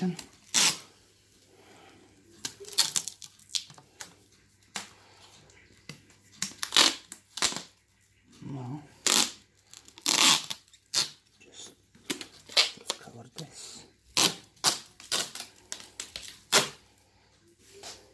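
Black heavy-duty adhesive tape being pulled off its roll in short, rasping strips, over and over, as it is wound tightly around a stroller's handle tube.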